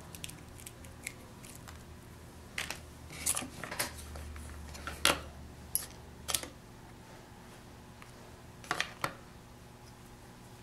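Small metal sculpting tools clicking and clinking as they are handled, picked up and set down on a wooden work board: a scattering of light taps, the sharpest about five seconds in and a quick pair near the end.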